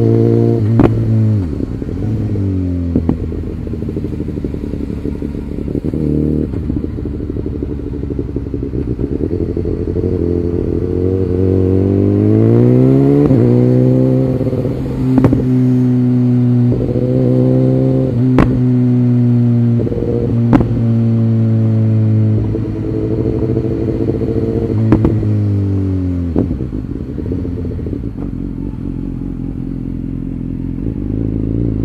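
Motorcycle engine heard from the rider's position on a downhill run: the engine note falls near the start, rises about halfway through as the throttle opens, holds steady, then falls again near the end. A few sharp clicks stand out over the engine.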